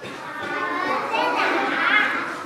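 Many young children's voices at once, overlapping, growing louder toward the end.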